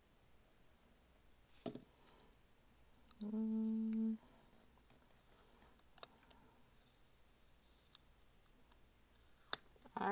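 A few faint sharp snips and clicks of small scissors cutting a paper planner page, and a little over three seconds in, a single hummed note held steady for about a second.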